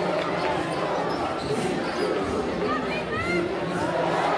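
Gym crowd chatter, with a basketball bouncing on a hardwood court and a few short squeaks near the end.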